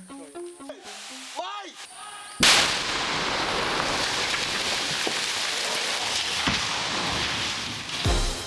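A demolition charge set under a steel distillery vat goes off about two and a half seconds in with a sudden loud blast. A dense, steady rush of noise follows to the end as debris comes down.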